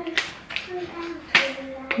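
Grocery packages handled and set down on a kitchen counter: three sharp knocks, the loudest a little past halfway, with a faint murmuring voice underneath.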